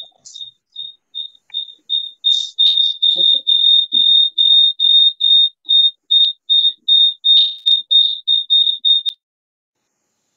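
A high-pitched electronic beep repeating evenly about three times a second, faint at first, then much louder from about two seconds in, and cutting off suddenly about nine seconds in.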